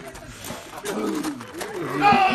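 Men's voices shouting drawn-out war-dance cries that slide down in pitch, with the drum silent.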